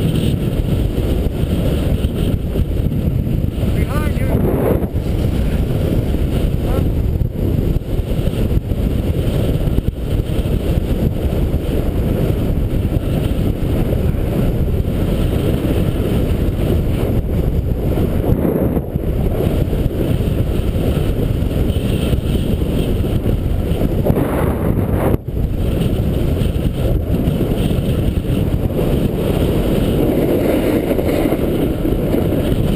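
Steady wind rumble on the microphone of a camera moving fast down a groomed ski run, mixed with the hiss of sliding over packed snow. It drops out briefly for a moment about 25 seconds in.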